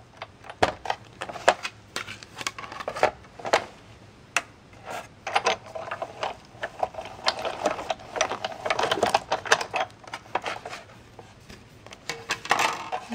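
Sizzix Big Shot embossing machine being hand-cranked, rolling its plates and an embossing folder with cardstock through the rollers: a string of irregular clicks and knocks that grows busier and louder in the second half.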